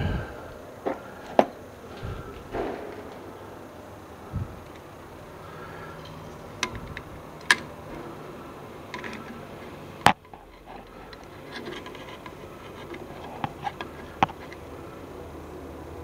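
Scattered sharp clicks and light knocks of metal tools and parts being handled at a lathe, over a faint low hum.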